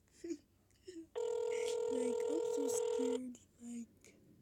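Telephone ringback tone over a phone's speakerphone: one steady ring lasting about two seconds, starting about a second in. It means the number being called is ringing and has not yet answered.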